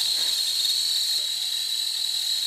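Stainless steel stovetop kettle whistling at the boil: one steady, high-pitched whistle over a hiss of steam.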